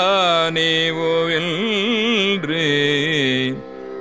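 A voice singing a Tamil devotional hymn verse in Carnatic style, its pitch gliding and wavering through ornamented notes over a steady drone, breaking off about three and a half seconds in.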